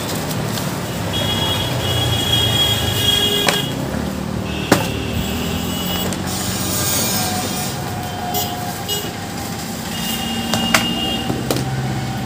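Road traffic: motor vehicle engines running steadily, with several brief high-pitched tones coming and going and a few sharp clicks.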